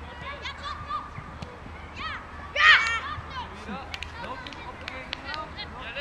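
Children's voices calling out during a youth football game, with one loud, high-pitched shout about two and a half seconds in, and a few short knocks scattered through.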